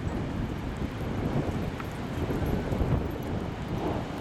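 Wind buffeting the microphone, a loud low rumble that rises and falls, with breaking surf behind it.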